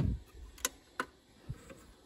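A low thump, then three or four short sharp clicks about a third to half a second apart, from the front buttons and casing of a disc player being handled and pressed as it switches off.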